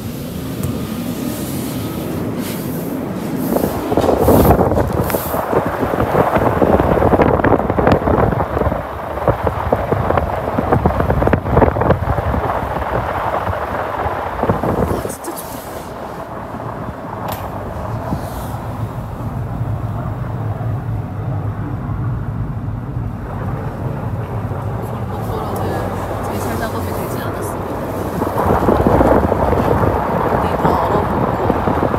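A Land Rover Defender's tyres rolling and crunching over packed snow and ice, a loud rumbling noise with the engine humming beneath. The rumble is heaviest from about four to fifteen seconds in and again near the end, easing to a steadier hum in between.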